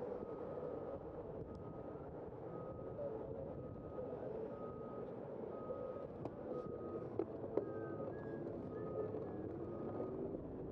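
A high electronic beep repeating at one pitch, about once a second, over the steady noise of street traffic. Two sharp clicks come about seven seconds in.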